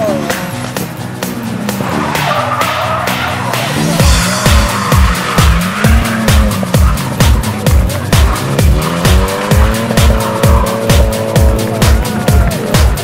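Electronic dance music with a steady kick drum, coming in about four seconds in, laid over a rally car's engine revving up and down with tyre squeal.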